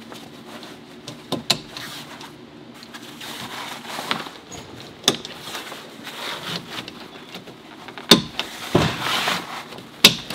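Heavy tent fabric rustling and crumpling as it is pushed up along the camper roof frame, with several sharp clicks of snap fasteners being pressed into place, the loudest ones near the end.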